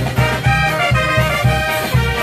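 Brass band playing a tune: trumpets and trombones in unison over a steady low beat of bass and percussion, about four pulses a second.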